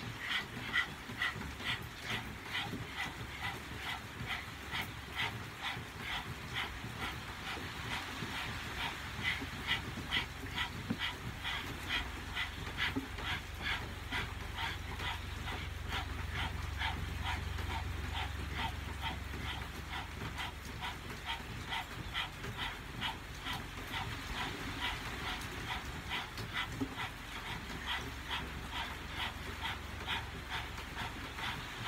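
Several people panting rapidly through open mouths with tongues out in a Kundalini breathing exercise. The short, sharp breaths keep an even, fast rhythm.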